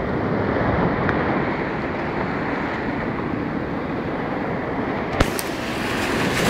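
Steady rush of sea surf washing over a sandy beach, mixed with wind buffeting the microphone. A sharp click comes about five seconds in, and after it the noise turns brighter and hissier.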